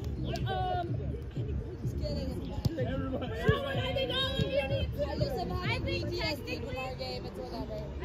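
Background chatter of several voices with no clear words, and one short sharp knock about three and a half seconds in.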